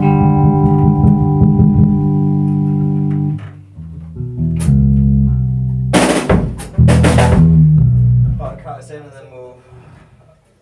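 A band rehearsing: a loud electric guitar chord rings for about three seconds, then shorter guitar and bass notes follow, with two loud crashes from the drum kit just past the middle. A voice comes in near the end as the playing fades.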